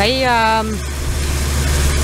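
Steady low drone and rushing noise of a pontoon boat underway. The rushing swells toward the end, under a woman's long drawn-out spoken word at the start.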